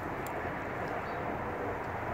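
Steady noise of freeway traffic.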